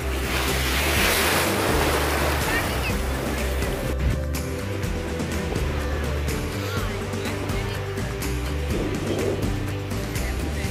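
Background music laid over waves breaking and splashing in shallow surf; the surf noise drops away about four seconds in, leaving mainly the music.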